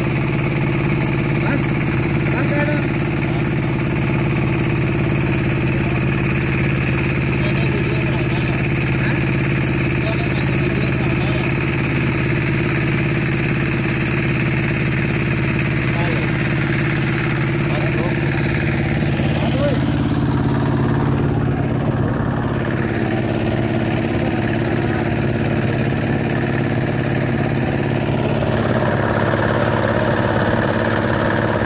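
A boat's single-cylinder diesel engine running steadily at a constant speed.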